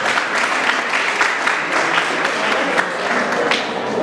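Audience applauding: a dense patter of many hands clapping that thins out near the end.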